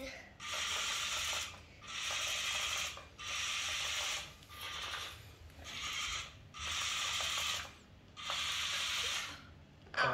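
Lego Boost electric motors driving a small Lego forklift on wheels and a track across a tiled floor: a grainy gear-train whir in about seven start-stop runs of roughly a second each, with short pauses between.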